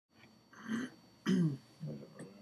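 A man clearing his throat and coughing: three short throaty sounds, the middle one loudest.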